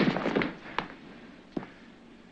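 The end of a loud scuffle dies away in the first half second. Then come a few faint, separate knocks, spaced irregularly.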